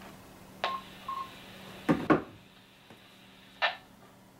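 Repeater tail coming back through a handheld transceiver's speaker after the call, with narrow radio-band hiss. Two short beeps, a courtesy tone from the repeater, come about a second in. Two sharp clicks follow near the middle, and a short burst of squelch noise comes near the end.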